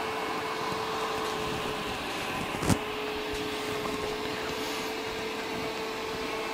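A fan running steadily, a hiss with a steady hum, and a single sharp click a little under halfway through.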